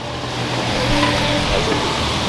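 Steady street traffic noise, with a motor vehicle's engine running nearby.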